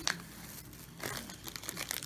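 Thin plastic shopping bag crinkling and rustling as a hand rummages in it, with a sharp crackle at the start and another about a second in.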